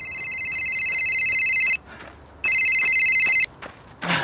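Mobile phone ringtone: an electronic sound of several steady high tones, ringing twice. The first ring grows louder over nearly two seconds, and the second lasts about a second at full level.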